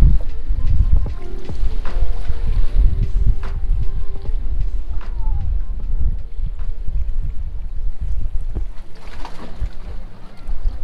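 Wind buffeting the microphone in a loud, gusting rumble, with background music underneath.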